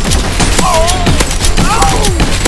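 Rapid gunfire sound effects over loud background music with a steady bass. Two short wavering pitched sounds come about half a second in and again near the end.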